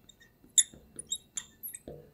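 Felt-tip marker squeaking on a glass lightboard while words are handwritten: a series of about six short, high squeaks.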